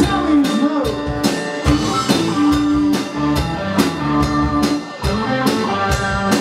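Live rock band playing an instrumental passage: electric guitars, bass and drum kit, with a steady drum beat and some bent guitar notes near the start and the end.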